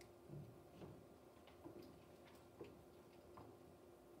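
Near silence: auditorium room tone with a faint steady hum and faint, irregularly spaced clicks.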